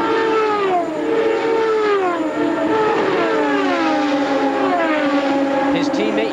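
IRL Indy cars' V8 engines at full speed, passing one after another. Each engine note drops in pitch as the car goes by, so the sweeps overlap.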